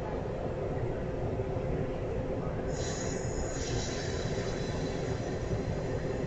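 Passenger railcars rolling slowly past with a steady low rumble of wheels on rail. About three seconds in, a high-pitched wheel squeal rises over it, strongest for about a second, then lingers more faintly.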